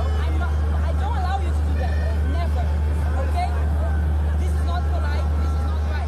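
A woman speaking over the babble of an outdoor crowd, with a steady low rumble underneath.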